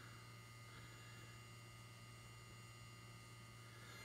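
Near silence: a faint, steady low hum.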